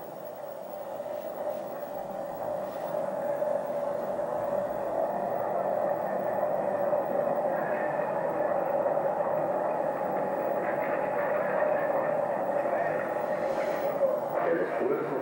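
A steady, noisy drone from an old documentary film's soundtrack played over loudspeakers, slowly growing louder.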